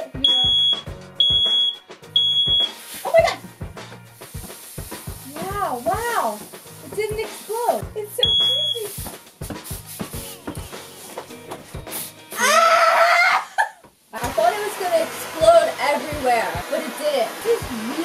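Smoke alarm beeping: three short, high, piercing beeps about 0.7 s apart near the start and one more around the middle, over laughter and excited voices. A loud, high squeal of voice about two-thirds of the way through is the loudest moment.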